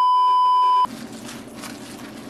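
A single steady electronic beep, the classic test-tone censor bleep laid over a colour-bar edit, lasting just under a second and cutting off sharply. Low, faint room noise follows.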